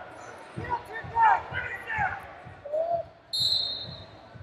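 Arena sound of a wrestling bout: repeated dull thuds on the wrestling mats and voices calling out, echoing in a large hall, with a steady high whistle tone starting near the end.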